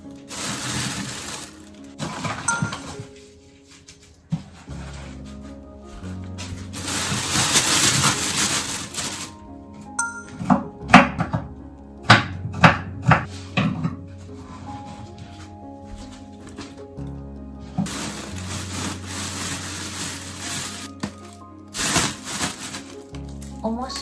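Kitchen knife chopping napa cabbage core on a wooden cutting board: a quick run of about seven sharp chops in the middle, over background music with steady low bass notes. Longer stretches of rustling handling noise come before and after the chopping.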